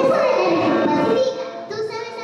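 A child singing, loudest for the first second or so and then softer.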